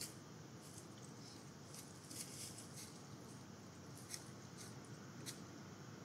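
Faint, irregular scratches and clicks from a raccoon clawing at a feeder bowl on a tree trunk, over a steady low hiss.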